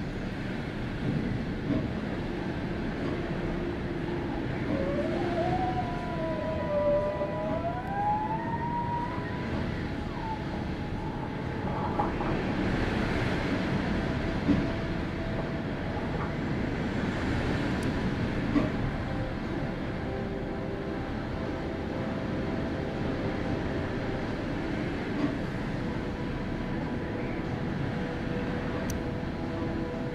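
Strong typhoon wind blowing in steady gusts, surging louder now and then, with trees and palm fronds thrashing in it. A thin tone wavers up and down for a few seconds early on, over the noise of the wind.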